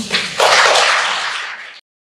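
Audience applause starting up, a dense clatter of many hands clapping, cut off suddenly to silence near the end.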